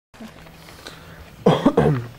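A person coughing twice in quick succession over a faint steady hum.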